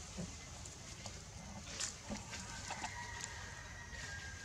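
A thin, high, steady animal call held for about a second and a half in the second half, with a few short clicks before it.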